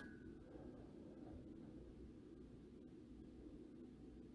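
Near silence: faint steady low hum of room tone.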